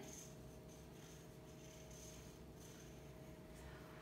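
Near silence: room tone with a faint steady hum and faint strokes of a felt-tip marker writing on a paper chart.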